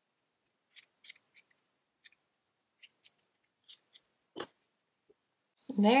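Small scissors snipping the yarn strands of a pom-pom to trim it even: about nine short, irregularly spaced snips, one louder than the rest about four seconds in.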